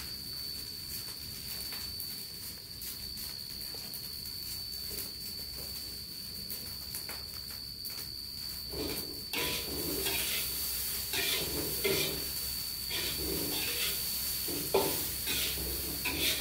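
Fried rice sizzling in a wok over a gas burner, a steady hiss. From about halfway through come irregular clatters and scrapes of kitchen utensils.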